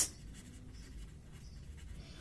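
Faint scratching of a pen writing on paper, in short strokes as a word is written out.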